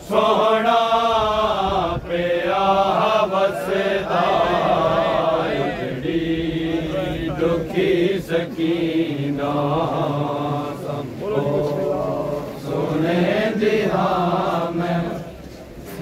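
A group of male reciters chanting a noha, a Shia lament for Imam Hussain, together in long, wavering sung phrases.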